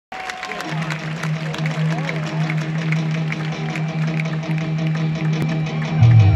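Live pop band's song intro heard from the audience: a held low note with a steady light ticking beat, and crowd voices over it.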